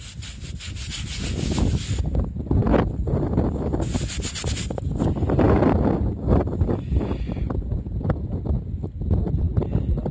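A small dug-up metal disc pressed under fingers and rubbed back and forth on waterproof trouser fabric to clean the soil off it: quick, even rubbing strokes for about two seconds, another short spell about four seconds in, then slower, uneven scraping and handling.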